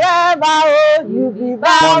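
A woman singing a phrase of an old-school worship song, holding wavering notes, dropping to a lower, softer phrase about a second in, then rising to a loud note near the end.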